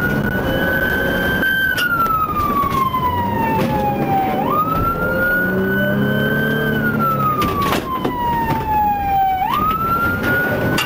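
Police car siren wailing in a slow cycle about every five seconds, its pitch jumping up quickly and then gliding slowly down, over the patrol car's engine and road noise during a pursuit. A few short sharp clicks cut through about two seconds in and again near the three-quarter mark.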